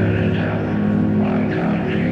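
Metal band's amplified electric guitars and bass holding a steady, droning low chord, with no drum hits.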